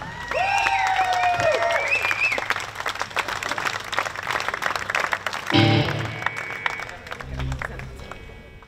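Audience applauding and cheering at the end of a song, with a long drawn-out shout over the clapping in the first couple of seconds. The clapping dies down after about five seconds.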